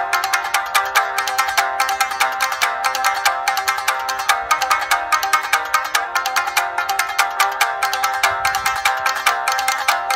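A trio of shamisen playing together in a fast, driving run of sharply struck plucked notes, with the strings' bright percussive attacks coming several to a second.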